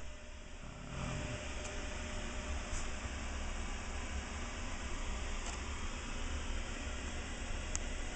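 Steady machine hum and hiss of running grow-tent hydroponic equipment, with a few faint ticks.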